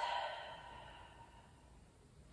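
A woman's audible exhale, a soft breathy sigh that fades away over about the first second, followed by near silence.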